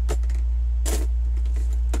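A steady low hum throughout, with three short rustles of handling, the loudest about a second in.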